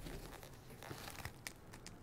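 Faint rustling and a few light clicks as a face mask is put on and its straps adjusted at the head.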